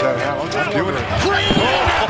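A basketball bouncing on a hardwood court in live game audio, with several sharp bounces under a voice.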